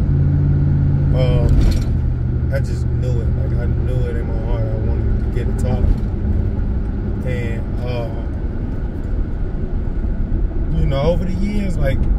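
Steady low drone of a Chevrolet Tahoe PPV's V8 engine and tyres, heard from inside the cabin while cruising along a city street.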